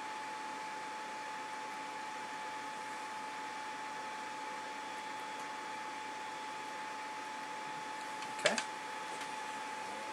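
Steady room noise: an even hiss with a faint constant hum-like tone and no distinct events.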